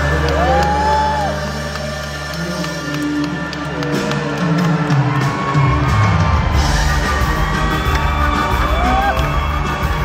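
Live band music with the audience cheering and whooping over it.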